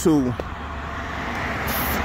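A car approaching along the street, its road noise rising steadily.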